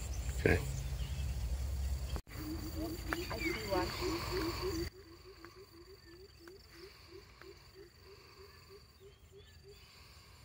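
An animal calls a rapid run of short, low, repeated notes, about four or five a second. It starts about two and a half seconds in and keeps going, over a steady high-pitched insect drone. A low rumble covers the first half and stops suddenly about five seconds in.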